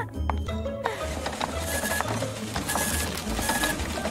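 A printer running, feeding out a printed page with a steady mechanical whir and clatter, under background music with a low pulsing beat.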